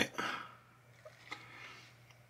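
Quiet handling of a trading card in the fingers: a short soft rustle just after the start and a faint tick about halfway through, over a low steady hum.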